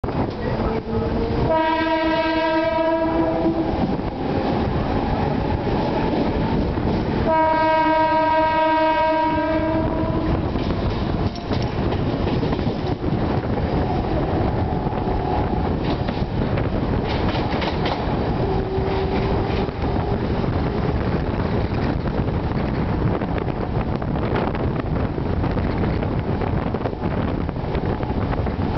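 A 15-coach EMU suburban train accelerating after starting from a station. The horn sounds two long blasts in the first ten seconds, over steady wheel-on-rail running noise and the whine of the traction motors.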